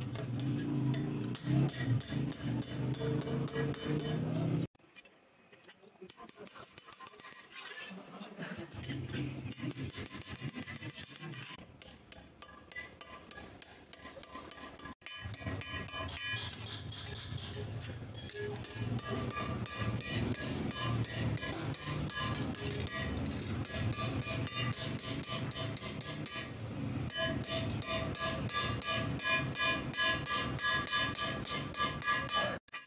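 Background music over repeated hammer taps on a thin steel plate resting on a steel bar, metal striking metal in quick clinking blows.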